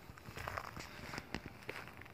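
Footsteps on gravel and dry grass: a faint, irregular run of small crunches and crackles.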